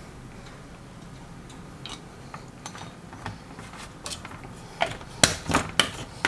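Faint plastic handling ticks, then near the end a quick run of sharp clicks and knocks as a plastic screw cap is fitted onto a plastic water bottle.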